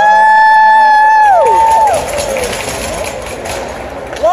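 Arena horn blasting a loud chord of several held tones for about two seconds, each note sliding down in pitch as the horn cuts off, over crowd noise and cheering in the hockey rink.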